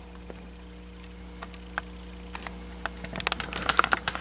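Water dripping from a clear condensate drain hose into a glass: scattered light ticks that come faster near the end, over a steady low electrical hum.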